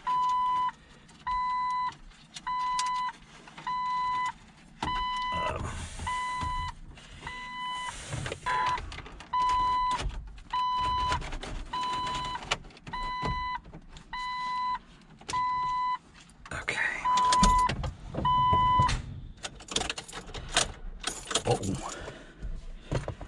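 Jeep Wrangler's dashboard warning chime: a steady electronic tone about once a second that stops near the end, with plastic knocks and clicks from a car stereo being pushed into the dash.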